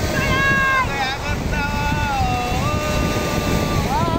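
A high voice holding long, drawn-out notes, several in a row with short glides in pitch between them. Wind rumbles on the microphone throughout.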